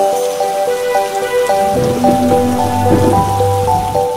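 Steady rain falling, mixed with a melody of short stepping notes. A low rumble joins a little before halfway through and fades before the end.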